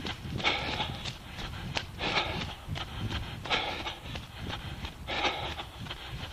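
A runner breathing hard, a loud breath about every one and a half seconds, over the quick regular thud of running footfalls.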